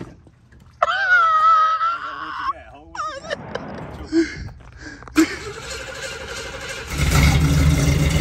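A 1986 Oldsmobile 442 Cutlass V8 being started after sitting for three weeks. A click about five seconds in leads into a noisy stretch, and near the end the engine fires and runs with a loud low rumble. Earlier a voice calls out with a long wavering tone.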